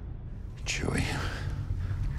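A short breathy, whisper-like voice about a second in, over a steady low rumble.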